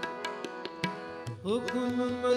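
Kirtan accompaniment: RINA harmoniums holding notes under a run of tabla strokes. About a second and a half in, the held notes slide up to a higher pitch.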